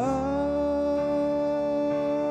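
Male voice holding one long wordless sung note over a karaoke backing track, sliding up into the pitch at the start and then holding it steady.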